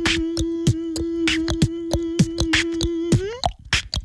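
Vocal beatboxing: a steady hummed note is held over a regular beat of kick-drum thumps and sharp snare and hi-hat clicks made with the mouth. The hummed note stops about three seconds in, and a few looser percussive clicks follow.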